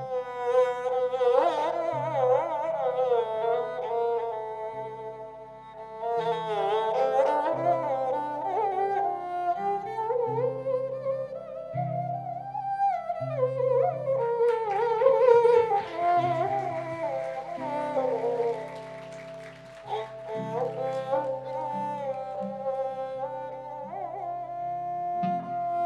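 Instrumental interlude of a ghazal: a sarangi plays an ornamented melody full of slides and wavering notes over low held bass notes from the band.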